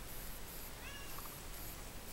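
A cat gives one short, high meow about a second in.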